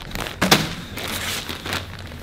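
Clear plastic garment bag crinkling as it is handled, with a sharper, louder rustle about half a second in.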